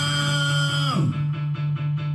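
Karaoke backing track of a rock song: a held note slides down about a second in, then guitar plays a steady repeated pattern of about four to five notes a second over a pulsing bass note.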